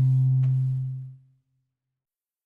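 The last chord of an acoustic-guitar jazz track rings out and fades away about a second in, leaving silence at the end of the track.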